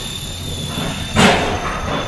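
Steady background noise of a large store with a faint constant high whine, broken a little over a second in by one sudden loud noise that lasts a fraction of a second.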